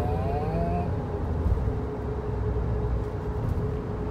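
Cabin noise of a moving kei car on an expressway: a steady low road and engine rumble with a constant hum. A brief rising whine comes in the first second.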